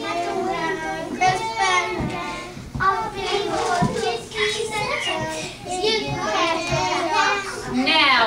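A group of young children singing a short song together, many voices at once.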